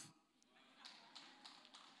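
Near silence: faint room tone with a few faint taps.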